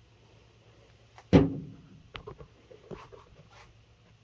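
One sharp, loud knock about a second and a half in, followed by a few light clicks and taps of handling.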